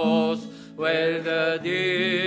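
Male voice singing a hymn over acoustic guitar, holding long notes, with a short gap for breath about half a second in.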